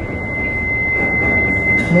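A steady high-pitched tone held on one unchanging note over a constant background hiss.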